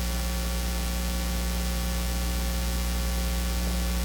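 Steady electrical mains hum with a buzzy row of overtones and a constant hiss.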